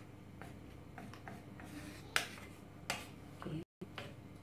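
Wooden spatula stirring a simmering curry in a metal frying pan, knocking and scraping against the pan several times, the loudest knock about halfway through.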